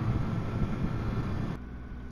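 Motorcycle riding along at road speed: engine running under a rush of wind noise on the microphone. About one and a half seconds in, the sound drops suddenly to a quieter, lower engine hum.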